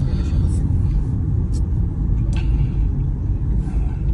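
Steady low rumble of a car driving, heard from inside the cabin, with a few faint brief knocks or rattles.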